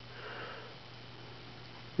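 A single soft sniff, lasting well under a second near the start, over a faint steady low hum.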